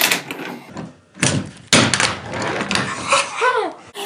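Braille handboard made by Hangnail being flicked into a heelflip on a wooden tabletop: a sharp clack as it pops, then loud wooden knocks about a second in as it comes down and lands. A short vocal exclamation follows near the end.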